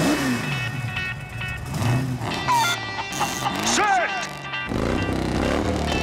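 Cartoon race vehicles revving their engines under a music score. A steadier low engine rumble sets in near the end.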